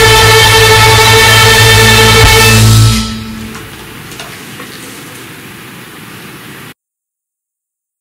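Violin over a backing track holding a final sustained chord, which cuts off about three seconds in. A faint room sound follows, then dead digital silence near the end.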